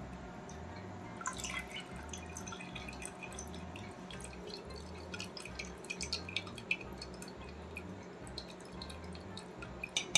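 Thin stream of dry-ginger coffee decoction trickling through a plastic tea strainer into a pot of milk, with scattered drips and small splashes.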